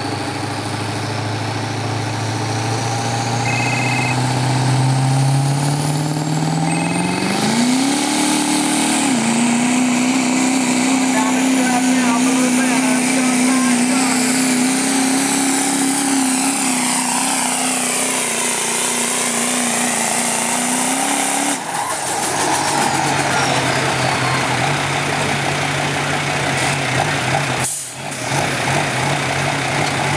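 Duramax turbo-diesel V8 pickup pulling a sled at full throttle. The engine climbs in pitch over the first several seconds and holds at high revs for about twelve seconds. It then drops suddenly to a low idle about two-thirds in as the pull ends.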